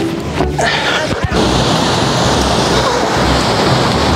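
Wind buffeting the microphone: a steady, loud rush with low rumbling, and a brief bit of voice in the first half-second.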